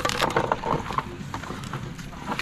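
Irregular wooden knocks and clacks as a bamboo and wood spit pole holding a pig is handled and pushed into a bamboo axle.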